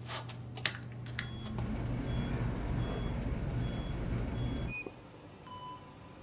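Elevator car running with a steady low hum that swells about two seconds in, a few light clicks at the start and faint short beeps repeating about every 0.7 s. About five seconds in it cuts to quieter operating-room sound with a hiss and a few short electronic monitor beeps.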